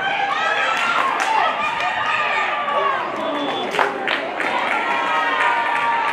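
Many high-pitched voices shouting and cheering at once, surging suddenly at the start as a flag football play breaks downfield toward the end zone.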